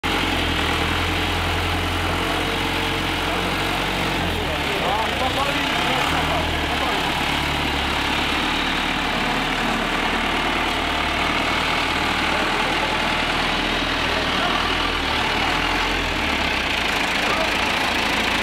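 Old farm tractor's engine running steadily with a low rumble while the tractor is driven slowly.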